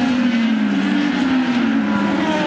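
IndyCar's Honda V8 engine running with a steady note that falls slightly as the car slows off the pace.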